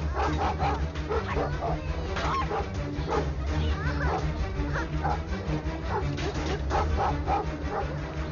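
A dog barking repeatedly in short bursts over a film's background music score.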